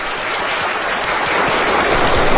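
A steady rushing noise with no pitch or rhythm, growing slightly louder.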